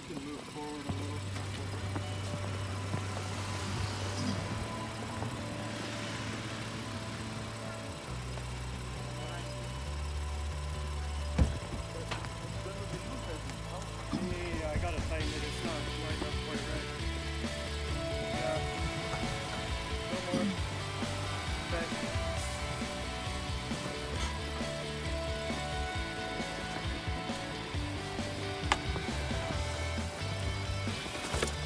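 Background music with a bass line that steps to a new note every second or two, and one sharp knock about eleven seconds in.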